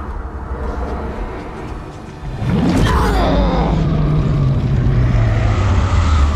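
TV drama soundtrack of sound effects and score for a superpower clash. A low rumble swells suddenly a little over two seconds in into a loud, deep drone with a falling whoosh, and the drone holds.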